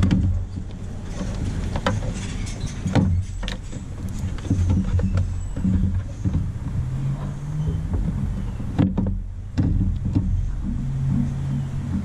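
Knocks and clunks of an aftermarket towing mirror being worked onto its mount on a pickup truck door, with several sharp knocks over a low steady hum.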